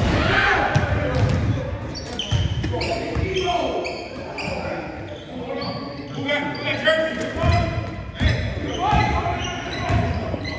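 A basketball bouncing on a hardwood gym floor, with many short, high sneaker squeaks as players cut and stop, in a large echoing hall.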